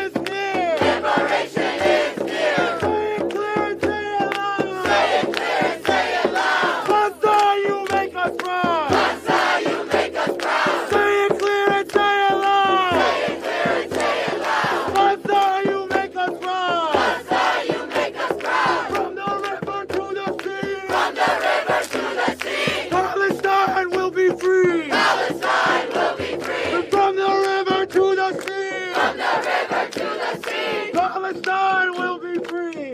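Protest crowd chanting slogans together, led by a man on a microphone. Short chanted phrases repeat every couple of seconds without a break.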